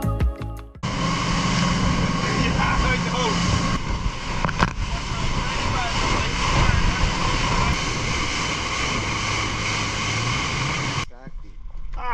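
Motorboat running fast over open water: a steady engine drone under the rush of spray and wind. Music ends about a second in, and the boat sound cuts off shortly before the end.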